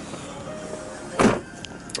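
Car radio playing faintly after being turned down low, with a single short thump about a second in.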